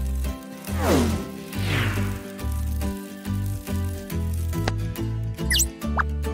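Cartoon background music with a pulsing bass line. Two falling pitch slides sound in the first two seconds, and a short high rising squeak comes near the end.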